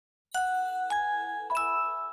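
iQIYI streaming service's audio logo: a chime of three bell-like notes, each a step higher than the last, struck about a third of a second, one second and a second and a half in, the last one ringing on and fading.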